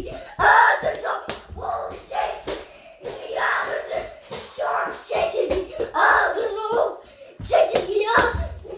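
A young child's voice making wordless play shouts and noises, again and again, while running, with sharp slaps of footsteps on a laminate floor between them.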